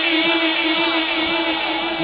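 A man's voice holding one long chanted note at a steady pitch, trailing off slightly as it goes.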